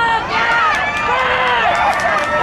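Several voices shouting and yelling over one another during a running play, the calls rising and falling in pitch and overlapping without clear words.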